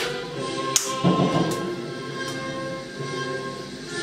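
Orchestral music playing from a television broadcast, with a few sharp cracks over it in the first second or two.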